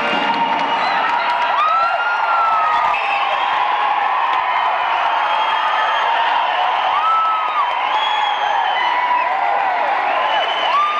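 Large indoor crowd cheering, with many shouts and whoops rising and falling over a steady roar of voices.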